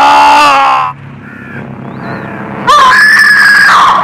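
Several voices yelling together, cutting off about a second in. After a quieter stretch, a single high-pitched human scream rises in and is held for about a second near the end.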